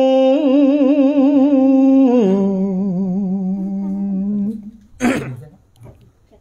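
Khmer smot chanting: a single voice holding long, slow notes with wide wavering vibrato, stepping down to a lower held note about two seconds in and fading out after about four and a half seconds. A brief sharp noise about five seconds in.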